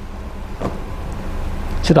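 A low rumble that slowly grows louder, with one faint click about two-thirds of a second in. A man's voice starts again at the very end.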